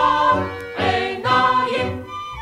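A vocal group singing a Hebrew song over instrumental accompaniment. The voices dip briefly about half a second in and drop out at the very end, leaving the instruments.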